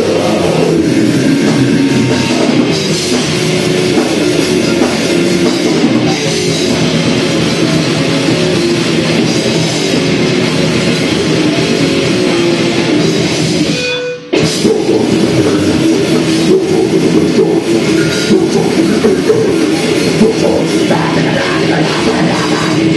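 Live heavy metal band playing loudly: electric guitars, bass and drum kit. The music cuts out for a split second about fourteen seconds in, then carries on.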